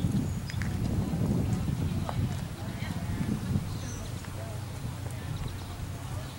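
A horse's hooves cantering on a sand arena: dull, uneven hoofbeats.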